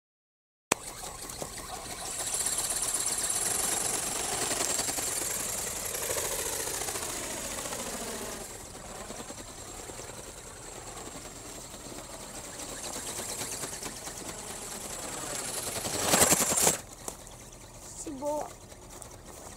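Radio-controlled ornithopter's small geared brushless motor and wing-flapping mechanism running in flight, starting abruptly about a second in: a thin high steady whine over a mechanical whirr, with pitch slides as it passes, and loudest for a moment near the end as it comes close.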